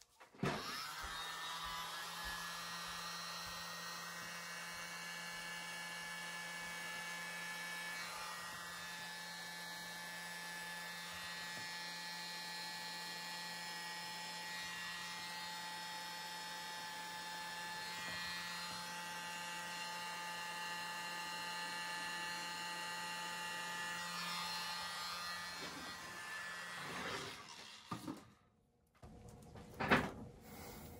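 Small handheld hair dryer running steadily on wet acrylic paint, blowing a puddle of poured paint outward into a bloom. It whines up as it is switched on, runs with a steady hum and high whine, and winds down near the end, followed by a single knock.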